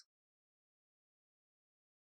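Near silence: digital silence between narration lines.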